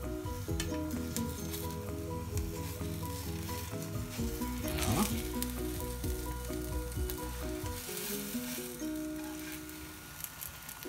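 Thin flatbread frying in a nonstick pan, a light sizzle heard under background music with a repeating melody.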